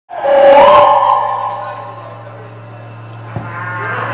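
One long held note from a live band's instrument or amplification: it slides up in pitch shortly after it starts, then slowly fades, over a steady hum from the stage amplification. A short click sounds near the end.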